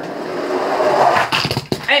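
Toy monster trucks rolling fast down a plastic ramp, a rising whirring rumble, then a quick clatter of knocks in the last second as they smash into a stack of toy cars.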